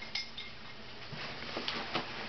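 Light metallic clinks from the tags on a small dog's collar as the collar is handled: a couple of short ringing clinks near the start and a few more near the end.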